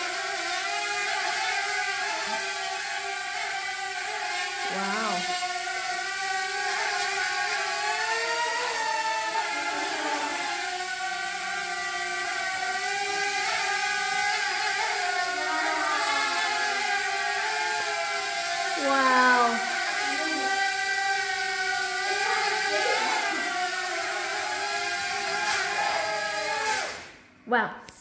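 Sharper Image Air Racer 77 quadcopter's four small propeller motors whining in flight, the pitch wavering up and down as the throttle changes. The whine stops suddenly about a second before the end as the drone lands.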